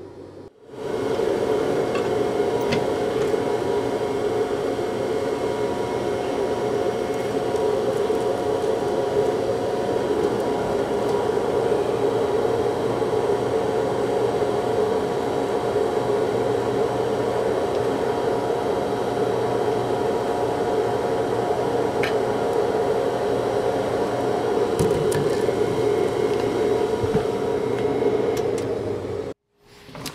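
Metal-melting forge running, a steady rushing noise with a low hum, starting about half a second in and cutting off suddenly just before the end.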